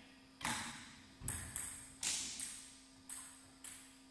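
A run of sharp, ringing taps, each much alike, a little irregular at first and then about two a second, over a faint steady hum.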